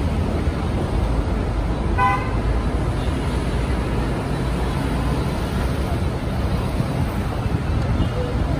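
Busy multi-lane city road traffic: a steady rumble of engines and tyres, with one short vehicle horn toot about two seconds in.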